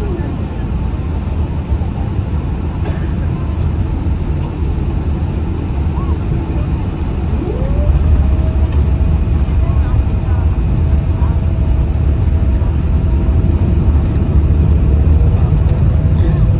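Cabin sound of a Boeing 777-300ER's GE90 jet engines: a steady heavy rumble with a thin whine that drops away at the start, then rises again about seven and a half seconds in as the engines spool up. The sound grows louder from there, typical of thrust being set for the takeoff roll.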